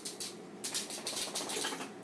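Quick, irregular clicks of typing on a smartphone's on-screen keyboard, several a second, starting about half a second in.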